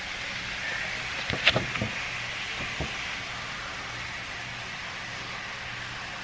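A paper greeting card being handled and opened: a few sharp clicks and rustles about a second and a half in, and one more near three seconds, over a steady hiss.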